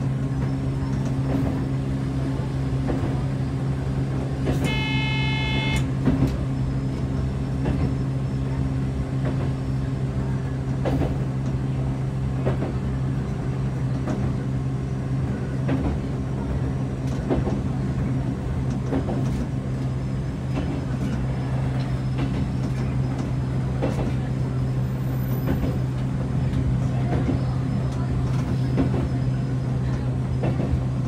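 Electric train running, heard from inside the driver's cab: a steady low motor hum with rail-joint clicks every second or so. About five seconds in, a single horn blast lasts just over a second.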